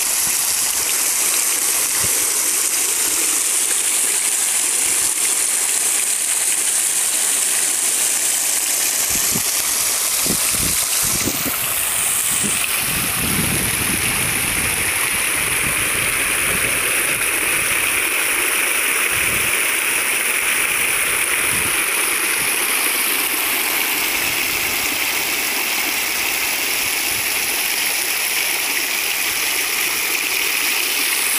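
Fountain water falling in streams from a disc atop a stone pillar into a round basin, splashing steadily. A few low thuds come between about nine and fourteen seconds in, and the sound's character shifts slightly about twelve seconds in.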